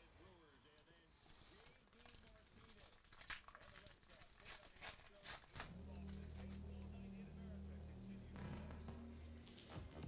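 Foil wrapper of a trading-card pack crinkling and tearing open by hand, with a run of sharp crackles in the middle. Low steady bass notes come in about halfway through and stop shortly before the end.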